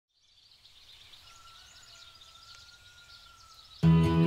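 Faint outdoor ambience with birds chirping, fading in, with a faint steady high tone held for a couple of seconds; music starts suddenly and loudly just before the end.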